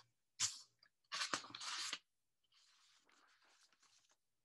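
A paper sheet rustling and crinkling under a hand: a short burst, then about a second of crackly rustling, then fainter rustles.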